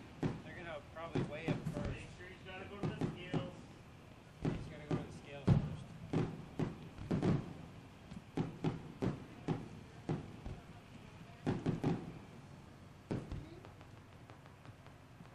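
Aerial fireworks going off: a long run of sharp bangs and thuds at irregular spacing, some in quick clusters.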